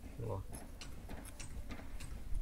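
Light, irregular clicks and scrapes of a thin 5 mm steel rebar pin being worked into a drilled hole in a concrete column.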